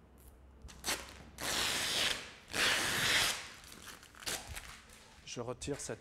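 Vinyl wrap film being sliced by the filament of a knifeless cutting tape as the thread is pulled up through it: two tearing, zipping strokes each under a second long, after a single click.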